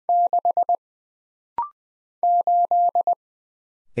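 Morse code sidetone keyed at 20 words per minute. It sends the digit six (one dah, four dits), gives a short higher-pitched courtesy beep about a second and a half in, then sends the digit eight (three dahs, two dits).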